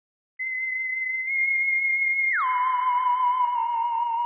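A single wavering electronic tone, like a theremin, in the outro music. It starts about half a second in and holds a high note, then glides down about an octave two seconds in and wavers on.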